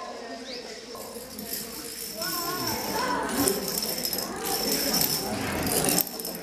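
Long chains of toppling dominoes falling in a continuous rattling clatter that starts about a second in and grows louder, with voices murmuring under it.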